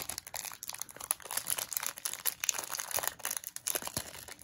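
Foil trading-card pack wrapper crinkling and tearing open in the hands, a run of irregular crackles.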